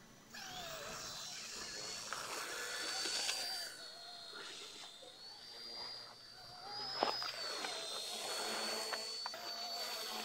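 Eachine E129 micro RC helicopter's electric motors and rotors whining, the high pitch wavering up and down as the throttle is worked while it lifts off carrying about eight grams of extra weight. A single sharp tick about seven seconds in.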